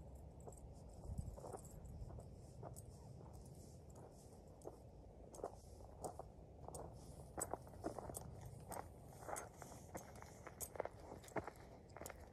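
Footsteps crunching on a gravelly dirt trail, faint at first and coming closer and louder toward the end.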